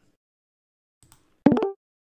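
A single short, loud pitched blip, rising slightly in pitch, about a second and a half in, over otherwise near silence.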